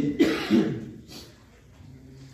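A man coughs, clearing his throat in two quick bursts about a third of a second apart, and the sound dies away within a second.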